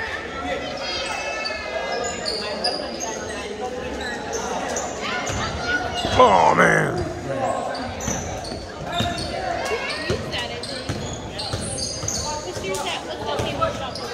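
A basketball bouncing repeatedly on a hardwood gym floor as it is dribbled, echoing in a large hall, under voices from players and the sideline, with a louder burst of voice about six seconds in.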